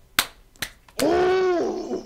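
Two sharp snap-like clicks, then a man's drawn-out, high-pitched vocal exclamation about a second long, its pitch rising and then falling slightly.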